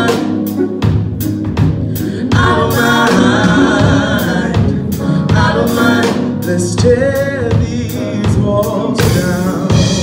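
A live band playing an R&B/gospel-style song: a drum kit keeps a steady beat under keyboards, with a voice singing over it without clear words.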